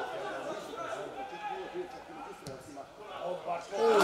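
Players' voices shouting and calling to each other across a football pitch, with no clear words, and a single sharp thud of a ball being kicked about halfway through.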